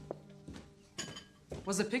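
A glass clinks once about a second in, leaving a short, thin ringing tone, after a couple of light knocks; it comes from the stemmed martini glass held in a gloved hand.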